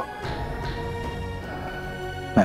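Background music: a dramatic score of sustained, held notes.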